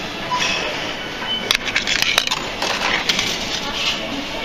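A one-euro coin fed into a beer vending machine's coin slot, clattering through the coin mechanism in a few sharp clicks about a second and a half in, over steady background noise.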